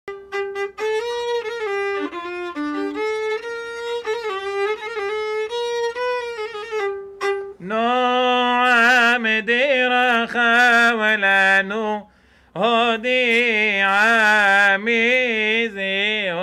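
A violin played with a bow, a short melody of held notes, for about the first seven seconds. Then a man sings a wavering, ornamented melody, pausing briefly about twelve seconds in.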